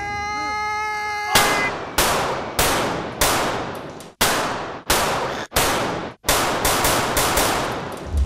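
A rapid string of about a dozen handgun shots, each with an echoing tail. They begin about a second in, spaced a little over half a second apart, then quicken into a fast volley near the end.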